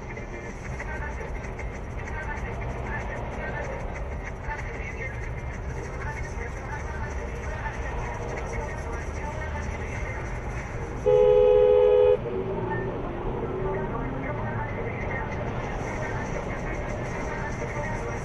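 Steady road and tyre noise inside a car travelling at motorway speed. About eleven seconds in, a loud two-tone car horn sounds once for about a second.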